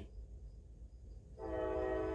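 Train horn blowing: after a low rumble, it sounds again about a second and a half in and holds a steady chord of several notes.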